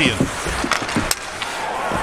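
Ice hockey arena sound: a steady crowd and rink noise, with skate blades scraping the ice and a sharp click about a second in, such as a stick or puck striking.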